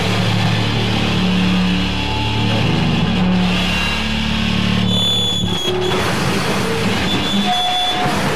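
Harsh noise music (noisecore): dense distorted noise over a low droning hum with held low tones. About five seconds in the low drone drops out, leaving thinner noise with a few thin, high, steady whistling tones.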